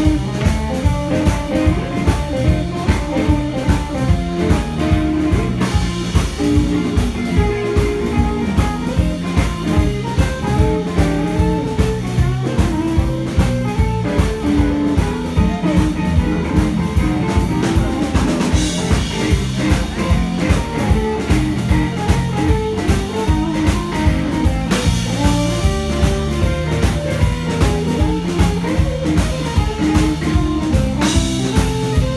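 Live blues band playing an instrumental passage: electric guitars, bass guitar and a Pearl drum kit keeping a steady beat.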